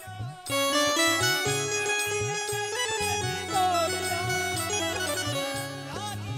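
Instrumental interlude of devotional bhajan music: an electronic keyboard plays a sustained, reedy melody over a steady beat of low drum strokes. The music comes in strongly about half a second in, after a brief dip.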